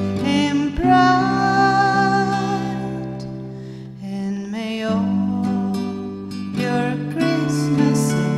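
Slow acoustic song: an acoustic guitar accompanies a woman's voice, which holds one long, slightly wavering note for about two seconds near the start.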